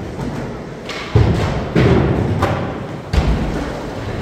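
Skateboards landing and rolling on a skatepark's floor and ramps: three heavy thuds, about a second in, just before two seconds and a little past three seconds, over the steady rumble of wheels.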